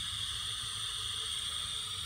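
Edsyn 1072 hot air station blowing air through a Quadra Flow nozzle: a steady, even hiss with a low rumble underneath.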